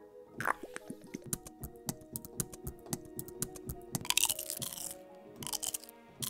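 Self-recorded 'ASMR percussion' samples played back from a sample library: a quick run of small, crisp clicks and taps over some held notes, then a couple of short crunchy, rustling bursts near the end.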